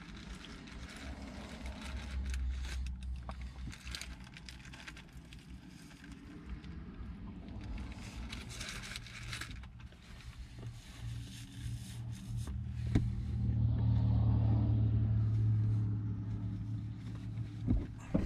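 Low motor-vehicle rumble that swells louder for a few seconds in the second half, with faint crackles of a paper sandwich wrapper and chewing over it.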